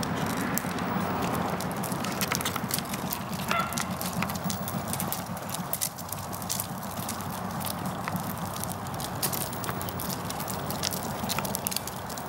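Stroller wheels rolling over a concrete sidewalk: a steady rumble with many small clicks and rattles.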